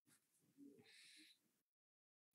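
Near silence: a pause in a lecture heard through an online-meeting audio feed.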